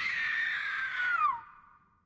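A woman's high scream, held steady, then dropping in pitch and dying away about a second and a half in.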